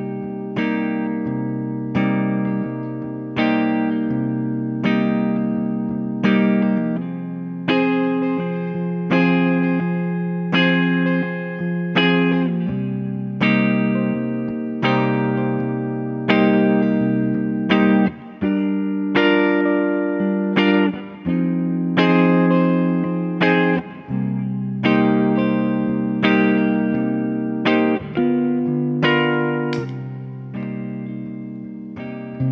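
2007 Gibson Les Paul 1957 Reissue goldtop electric guitar played through a 1963 Fender Vibroverb amp: chords strummed about once every second and left to ring, the chord changing every few strokes. There are brief breaks between some of the changes.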